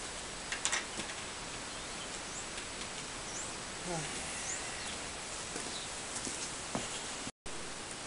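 Steady outdoor background noise, with a few faint bird chirps, a couple of light clicks about half a second in, and a brief dropout near the end.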